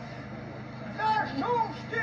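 A short pause in a man's shouted Albanian funeral lament (vajtim): the lamenting voice drops away, then a quieter voice comes in about a second in, over a steady low hum.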